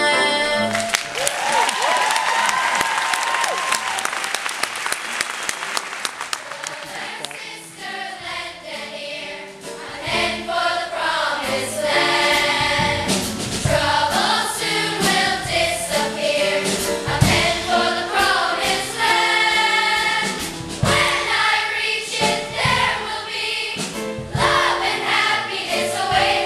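Audience applauding for the first several seconds, the clapping fading out, then a children's choir singing together in full voice.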